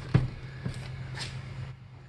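Handling and movement noise: a sharp knock just after the start, then a couple of softer knocks and rustles, over a steady low hum.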